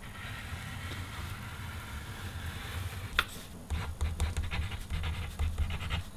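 Edding paint marker's tip drawn across black paper: a faint, steady scratchy rub, then from about three seconds in shorter strokes with a few light taps and low bumps.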